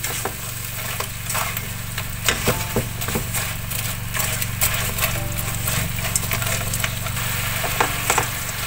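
Fried chicken feet being stirred and tossed in a fish-sauce, garlic and chili sauce in a non-stick wok: the sauce sizzles while a wooden utensil knocks and scrapes against the pan in scattered clicks. A steady low hum runs underneath.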